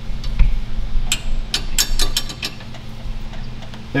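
Hand tool clicking on metal parts of a car's rear suspension during work on the anti-roll bar linkage: a string of irregular sharp clicks over a low steady hum.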